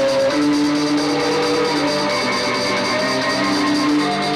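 Live rock band playing, with long held notes that step to a new pitch every second or so over a steady wash of band sound.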